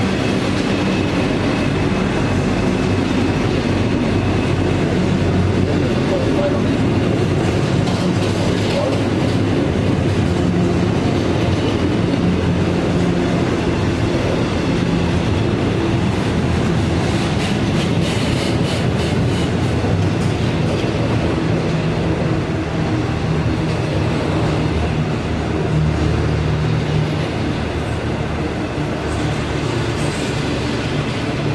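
Container freight train's wagons rolling past, a steady loud rumble and rattle of steel wheels on the rails, with a spell of rapid rhythmic clicking around the middle.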